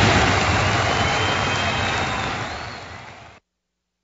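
The closing crash of a TV show's rock intro theme: a dense, noisy wash that fades over about three seconds and then cuts off to silence.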